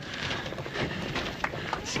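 Runners' footsteps on a paved lane, a few soft irregular footfalls under a steady rushing noise.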